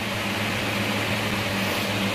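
A steady low electrical hum with an even hiss behind it, from a running appliance such as a room fan.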